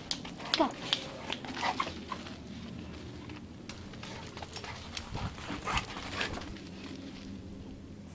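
A pit bull puppy and an adult pit bull playing: a run of short clicks and scuffles, with a few brief dog noises.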